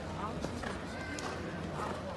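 Spectators talking in a large indoor arena: a steady murmur of crowd voices, with a few nearer voices standing out briefly.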